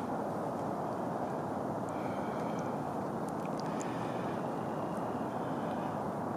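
Steady low rumble of outdoor background noise, even and unchanging, with faint high chirps in the middle of the stretch.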